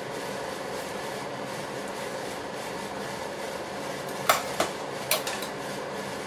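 A metal ladle knocks against a stainless steel pan, three sharp clinks about four to five seconds in, as mixture is scooped out. A steady background hum runs underneath.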